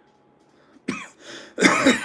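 A man coughing: one sharp cough about a second in, then a longer, louder cough near the end.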